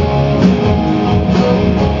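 Live punk rock band playing loud: several electric guitars strumming over drums, with no vocals.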